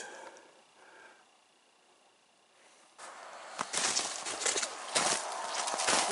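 Footsteps crunching through snow and brush, starting about halfway in and getting louder, after a few seconds of faint outdoor quiet.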